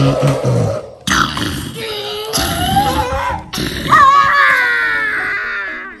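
A T-Rex roar for a toy dinosaur: two rough, throaty growls, then a long call from about four seconds in that falls slowly in pitch.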